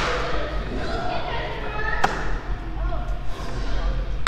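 Indistinct voices echoing in a large hall, with a single sharp knock about two seconds in.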